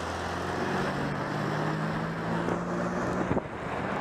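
Wind rushing over a helmet-mounted microphone while riding in traffic, with a steady low engine hum from a vehicle close by.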